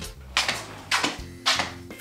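Four short, sharp knocks, about one every half second, in a small room.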